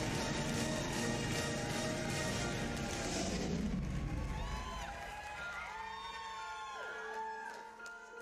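Studio audience cheering over a soft, sustained instrumental song intro. The cheering dies away about halfway through, leaving the held intro chords with a few scattered wavering calls or whistles from the crowd.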